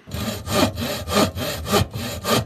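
Saw cutting through wood in quick back-and-forth rasping strokes, about four a second.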